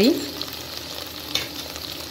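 Sliced onion, garlic and dried red chillies sizzling steadily in hot oil, frying on toward brown, with a single small pop about a second and a half in.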